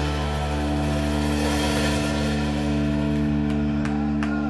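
Live rock band holding one long ringing chord on distorted electric guitars and bass, with a few light cymbal or drum taps in the second half.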